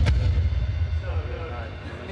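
A sharp hit right at the start, followed by a deep low boom that dies away over about a second and a half.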